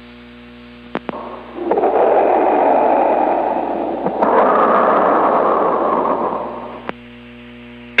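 CB radio receiver between transmissions: a low steady hum and a couple of clicks, then a loud rush of static from about a second and a half in, brightening about four seconds in, that drops back to the hum near the end.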